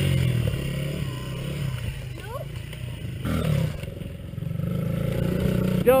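Small dirt bike engines running, the revs easing off in the middle and picking up again toward the end.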